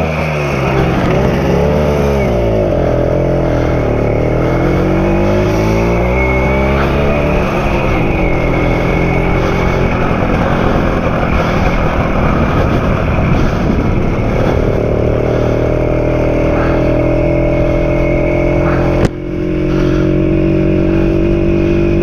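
BSA Bantam two-stroke single-cylinder engine pulling away, its pitch rising and dropping with each gear change for the first several seconds, then running at a steady cruising speed. A sudden break about nineteen seconds in, after which the engine carries on steadily.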